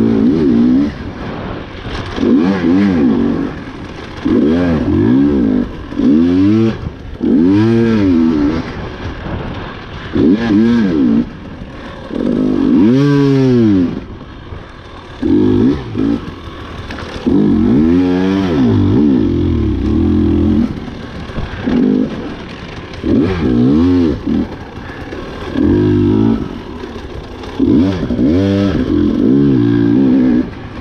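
Husqvarna TE 300 two-stroke enduro motorcycle engine being ridden hard. It revs up and eases off over and over, its pitch rising and falling every second or two.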